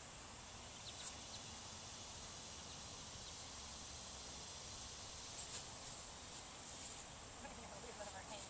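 Faint, steady, high-pitched drone of insects in summer grass, with a few soft clicks.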